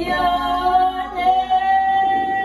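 Women's voices singing a slow hymn, moving between notes at first and then holding one long steady note.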